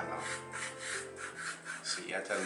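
Pastel pencil scratching across textured paper in quick, short hatching strokes, about four or five a second.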